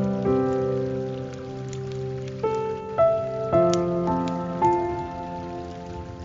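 Slow, calm guitar music with single plucked notes ringing and overlapping, a new note every half second to a second, laid over a steady hiss of falling water with faint drop-like ticks.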